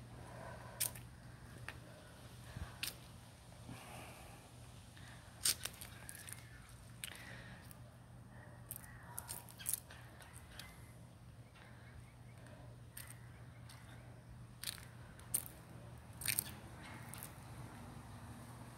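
Footsteps through an overgrown yard, heard as faint, irregular crackles and snaps over a low steady hum.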